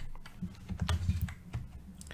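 Computer keyboard keys being pressed: several separate, sharp clicks spread over the two seconds.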